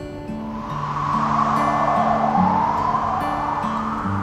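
Soft background music of slow, sustained low notes, with a broad whooshing sound swelling in over it and fading again near the end.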